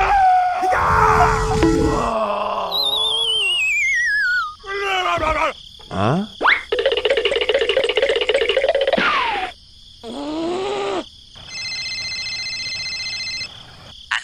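A string of cartoon sound effects and squeaky gibberish character voices: a wavering whistle that slides down, a boing, a long buzzing drawn-out groan, then a steady electronic tone near the end.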